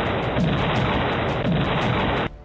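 Loud, even roar of noise with a low thud about once a second, of the kind heard in gunfire or explosion footage.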